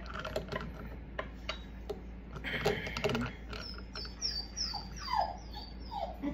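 Light metal clicks and taps of channel-lock pliers working on the faucet's braided supply-line fittings, with a clattery moment about halfway through. This is followed by a quick run of short, high, falling squeaks.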